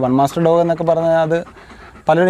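A Doberman panting with its mouth open, under a man talking for the first second and a half; after that the panting is left on its own and is faint.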